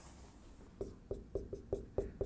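Dry-erase marker writing on a whiteboard: a quick run of short strokes starting a little under halfway in.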